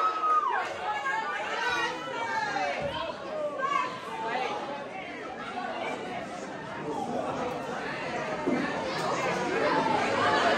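Crowd chatter: many people talking over one another in a large hall, a little louder in the first second or so.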